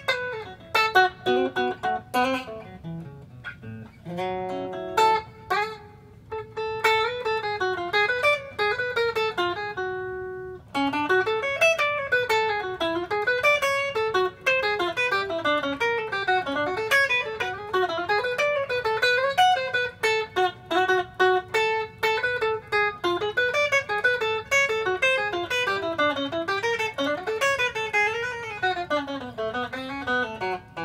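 Ibanez AZES40 electric guitar played as an improvised solo. It opens with a few separate picked notes and chords, holds one note about ten seconds in, then runs on in quick lines of single notes rising and falling.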